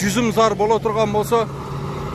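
A man talking, over a steady low hum. He stops a little before the end, leaving only the hum.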